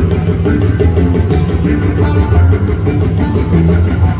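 Live band playing loud, dense music with heavy bass and a fast, steady beat.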